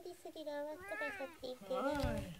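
Domestic cat vocalizing: a few short chirps, then two drawn-out meows that rise and fall in pitch.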